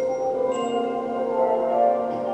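Brass band playing held, sustained chords, with new notes entering about half a second in and again partway through.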